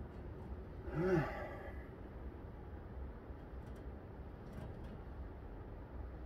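A man's short voiced sigh of exertion about a second in, rising then falling in pitch, while he works on the parallel bars. Otherwise only a steady low background hum.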